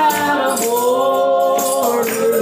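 Gospel song: voices hold a long sung note, moving to a new held note about half a second in, over light shaken percussion.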